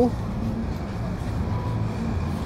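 Steady low rumble of vehicle noise with no clear events.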